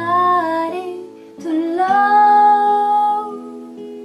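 A woman singing to her own acoustic guitar: a short phrase, then one long held note from about a second and a half in, over ringing strummed chords.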